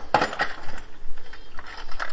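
Small metal rivets rattling and clinking in their box as they are sorted through: a run of quick, light clicks.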